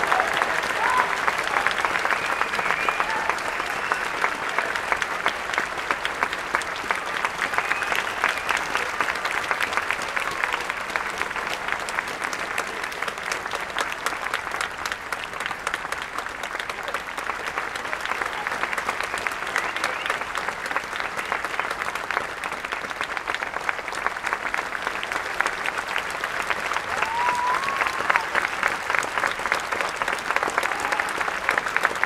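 Audience applauding at the end of a concert band piece, steady clapping that grows a little louder near the end, with a voice calling out above it.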